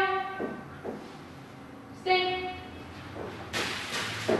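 A woman's voice gives two drawn-out commands at one steady pitch, about two seconds apart. Near the end come quick running footsteps on a padded floor.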